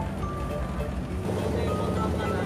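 Background music with a melody of held notes over a steady low rumble; a little over halfway through, the music changes to a fast repeating figure.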